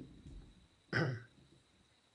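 A man clearing his throat once, a short sharp sound about a second in.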